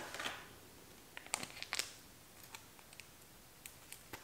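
A small paper-and-foil alcohol prep pad packet being torn open by hand: a faint rustle at the start, then a few short crackling tears around a second and a half in, with light ticks of handling after.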